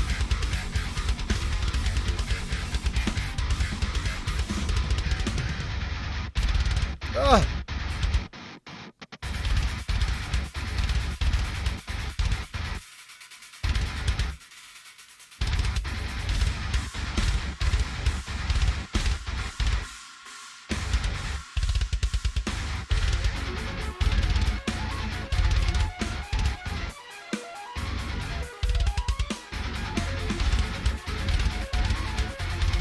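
Heavy metal track with fast double-bass drumming on a drum kit over guitar. The band cuts out suddenly several times, for about a second each, before crashing back in.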